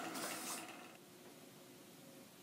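Faint hiss that dies away within the first second, leaving near silence: room tone.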